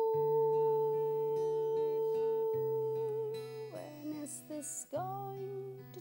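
A woman singing a slow song in English to her own acoustic guitar, holding one long steady note for nearly four seconds, then starting a new phrase near the end.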